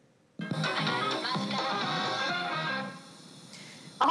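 A Studebaker portable CD and cassette player plays music from a cassette tape through its built-in speakers. The music starts about half a second in, just after the play key is pressed, and drops to a faint level for about the last second.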